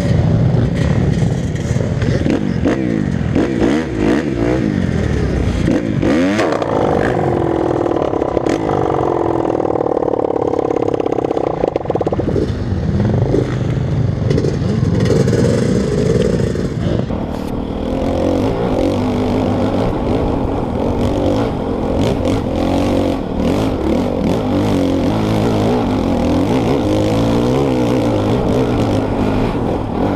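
Dirt bike engines revving hard in rising and falling surges as the bikes are ridden through deep mud.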